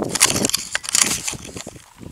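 Close crackling and rustling noise, dense for about the first second and then thinning out.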